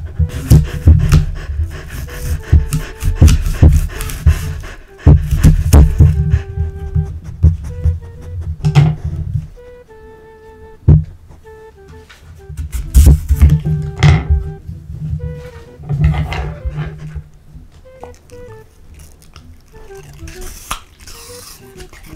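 Loud close-up crunching of a green apple, cut with a knife on a wooden board and chewed by a Samoyed, coming in bursts a few seconds long. Light background music of short plucked notes runs underneath.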